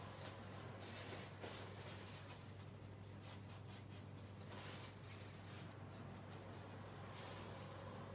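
Faint, soft rubbing of a wipe over a paper-covered craft tag, in several separate strokes, over a steady low hum.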